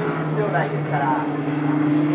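A race car's engine running steadily as it comes round the circuit, one constant note with a second, higher note joining about a second in, under a commentator's voice.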